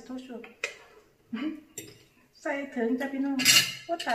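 A metal ladle clinking and scraping against a cooking pot as soup is served out, with a few sharp clinks.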